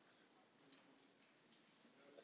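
Near silence: faint room tone, with a single faint click less than a second in.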